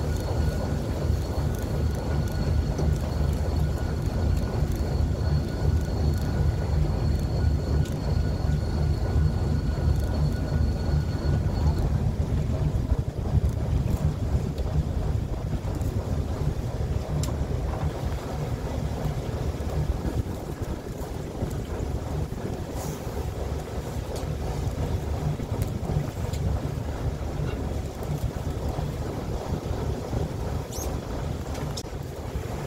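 Wind buffeting the microphone over the steady low rumble of a small fishing boat's engine. A faint thin high tone stops about twelve seconds in.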